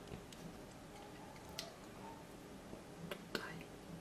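A few faint, sharp clicks over quiet room tone as a toothpick and a small plastic model part are handled, the strongest a little after three seconds in.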